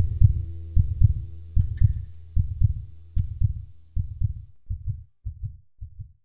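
Heartbeat sound, a low double thump (lub-dub) about once every 0.8 seconds, that grows fainter with each beat and fades out as the song's closing chord dies away.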